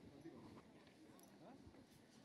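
Near silence: faint murmur of voices from people on a stage, with a few light clicks about a second in and near the end.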